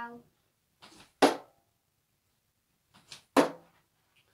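Two darts thudding into a dartboard about two seconds apart, each sharp hit preceded by a fainter click.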